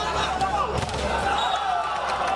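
Spectators' voices and shouts during a volleyball rally, with a thud or two of the ball being struck.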